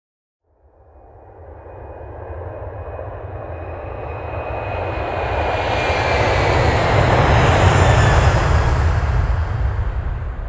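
A jet-like roar that starts about half a second in and swells steadily for several seconds, a deep rumble under a rushing hiss with a faint falling whistle, most likely an added outro sound effect.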